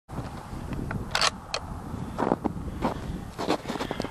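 Footsteps crunching in snow: five or six short crunches, roughly one every half second, over a low steady rumble.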